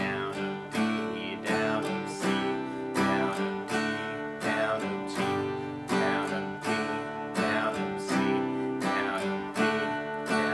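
Steel-string acoustic guitar strummed in a steady rhythm, the chord changing every few strokes: a down-down-up strum on each chord of a G, D, C progression.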